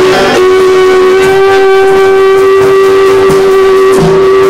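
Live rock band music, loud, with one long note held steady from about half a second in.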